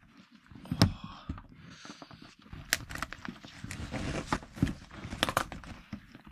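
Shell of a large cooked lobster being cracked and pulled apart by gloved hands: a string of sharp cracks and crackling at irregular intervals, with rustling handling noise between them.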